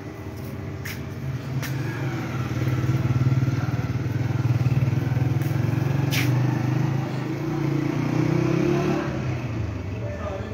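A small engine running with a steady low hum that grows louder over the first few seconds and fades toward the end, with a few sharp clicks along the way.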